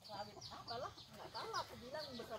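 Chickens clucking faintly: a run of short, repeated calls.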